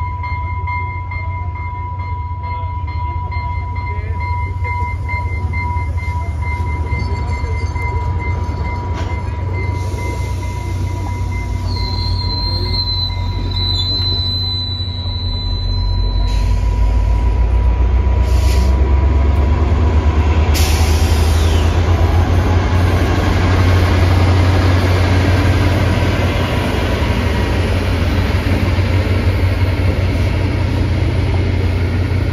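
FrontRunner commuter train pulling away on a curve, its wheels squealing with a steady high tone that fades out, and a brief higher squeal in the middle. The rumble of the diesel locomotive at the rear rises from about halfway as it rolls past.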